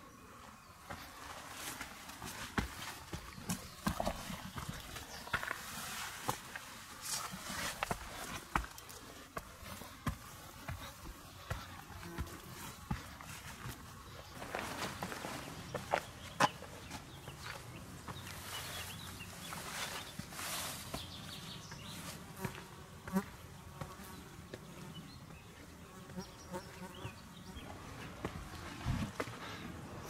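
Irregular footsteps, scuffs and gear rustling of a hiker with a heavy backpack climbing steep stone steps and rock.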